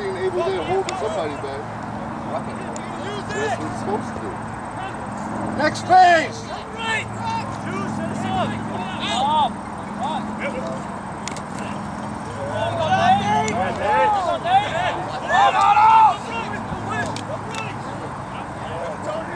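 Men shouting calls on a rugby pitch: scattered shouts from players and the touchline, loudest about six seconds in and again near the end. A steady low hum runs underneath through the middle.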